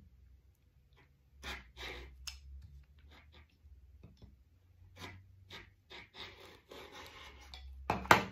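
Rotary cutter cutting knit fabric along a curved edge on a cutting mat: a run of short, faint scraping strokes starting about a second and a half in, over a low steady hum.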